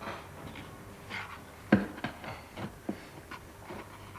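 Fingers brushing and tapping over a stack of rough, grainy boards: a string of short scrapes and knocks, the sharpest just under two seconds in.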